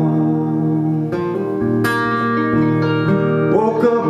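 Acoustic guitar strummed live, its chords ringing on between strokes, with a man's voice singing again near the end.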